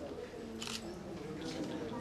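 Group of people chatting quietly in a hall, with a camera shutter clicking sharply about two-thirds of a second in and again about a second and a half in.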